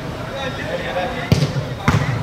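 Two sharp thuds of a football being struck, about half a second apart, near the end, over players' shouts.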